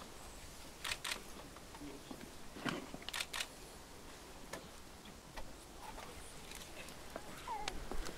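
Hush of a silent crowd with a few faint, sharp clicks, two quick pairs about one and three seconds in and a single one later.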